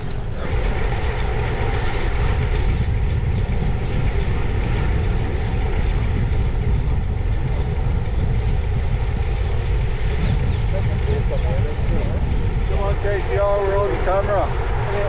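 Wind rushing over the microphone of a camera on a moving bicycle, a steady low rumble, with a voice near the end.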